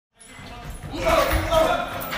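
Boxing gloves thudding on heavy punching bags in a large training hall, with voices in the room; the sound fades in just after the start.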